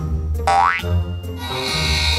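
Background music with a cartoon sound effect: one quick rising whistle-like glide about half a second in, as for a jump.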